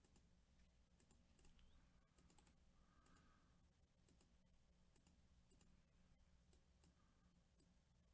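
Near silence with faint, irregular clicks of a computer mouse and keyboard.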